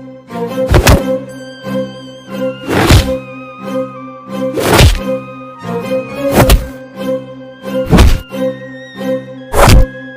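Dramatic action background music holding a steady tone, punctuated by about six heavy booming hits roughly every two seconds.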